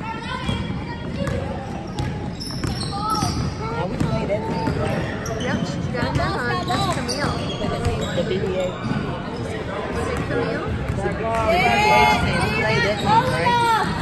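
A basketball bouncing on a hardwood gym floor during play, with voices echoing around the hall. The voices get louder near the end.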